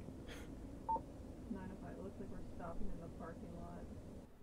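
Faint, muffled voices over a steady low hum, with one short electronic beep about a second in.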